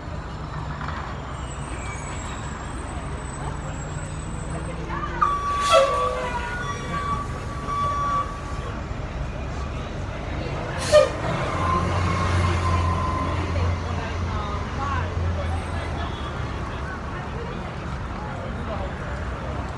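Orion VII Next Gen city bus at the stop. A sharp air hiss comes from its brakes or doors, then a steady beep sounds for about three seconds. A second sharp air release follows, and the engine rumble swells for several seconds as the bus pulls away, with street traffic behind it.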